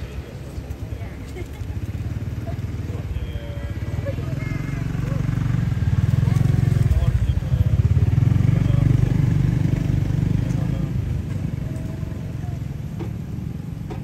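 A motor vehicle's engine going past: a low drone that grows louder toward the middle and then fades away.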